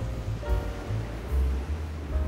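Background music with held, sustained notes, over a gusty low rumble of wind and small waves breaking on the shore.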